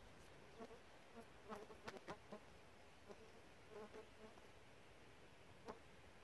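Near-silent outdoor quiet broken a few times by faint, brief buzzes of a flying insect passing close, with a few soft clicks among them.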